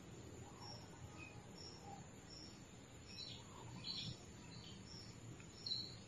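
Faint birds chirping in the background: a string of short, high chirps at irregular intervals over a low, quiet hum.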